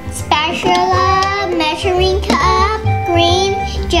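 A young girl's voice with steady background music underneath.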